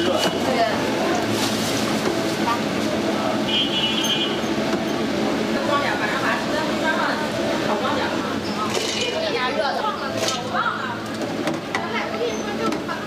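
Beef meatballs deep-frying in a large vat of bubbling oil, a steady sizzle, with people's voices chattering around it.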